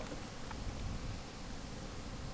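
Faint, steady background noise: a low rumble with light hiss and no distinct sound event.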